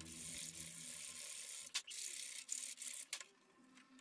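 Faint clicks and light scraping of a screwdriver working on a plastic socket-strip housing, over a soft hiss, dying away about three seconds in.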